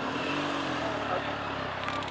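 A car engine running close by, its low pitch rising slightly and then easing, over steady street and wind noise.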